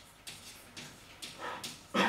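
Chalk writing on a blackboard: a run of short scratching strokes a few tenths of a second apart, with a sharper, squeakier stroke about one and a half seconds in and the loudest one near the end.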